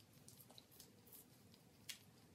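Near silence: faint scattered ticks from a handheld derma roller's needled drum rolling over the skin of the stomach, with one slightly louder click near the end.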